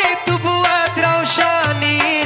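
Live South Asian–style Afghan music: tabla strokes keep a steady beat under a wavering melodic line from a man's voice, with a pulsing bass beneath.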